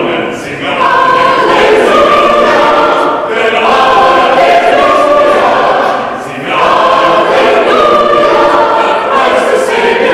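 Mixed choir singing a Christmas choral piece in long held phrases, with a short break for breath just after the start and again about six seconds in.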